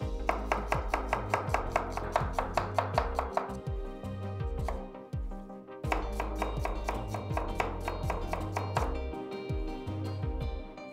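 Chef's knife chopping red onion on a wooden cutting board: quick, even knife strokes against the board in two runs, with a pause of about two seconds between them.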